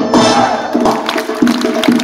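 Live folk dance music from an onstage band: a sustained melody over drum beats. About two-thirds of a second in the melody thins out and sharp percussion strokes are left.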